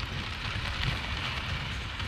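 Steady wind rumble on the microphone with the crackle of bicycle tyres rolling on a dirt path while riding.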